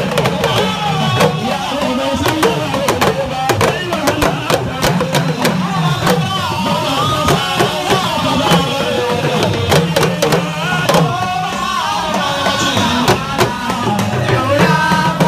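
Hausa ringside drums beaten with curved sticks in a fast, steady rhythm, with a man's voice singing over them through a microphone.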